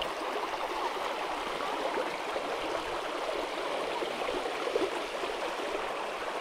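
Shallow creek water rushing steadily over flat rock ledges and riffles.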